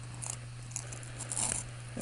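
A few faint, short clicks and scrapes from a screwdriver and the scooter's speedometer drive gear being handled, over a steady low hum.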